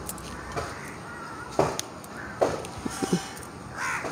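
A bird calling: two short calls about a second and a half and two and a half seconds in, with a few fainter ones just after.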